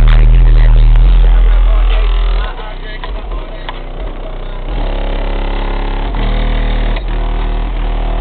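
Car stereo playing a song with vocals at very high volume through a 12-inch Re Audio MX subwoofer in a ported box, the deep bass dominating. It starts suddenly at full loudness and drops back somewhat about two and a half seconds in.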